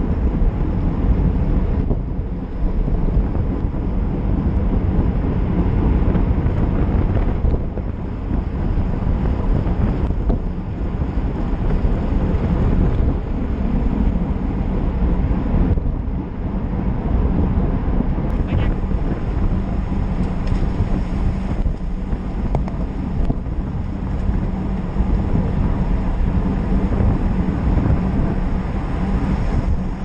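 Wind buffeting the microphone of a bike-mounted GoPro Hero4 Session at about 30 mph: a steady, loud rushing noise heaviest in the lows, mixed with the road noise of road-bike tyres on tarmac.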